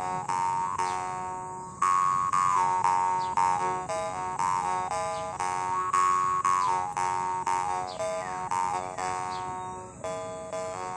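Copper jaw harp being plucked over and over: a buzzing drone whose bright overtones step up and down to carry an improvised melody.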